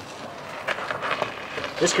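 Faint scuffs and a few light knocks of a heavy wheel and tire being brought over on gravel, with a man's voice starting near the end.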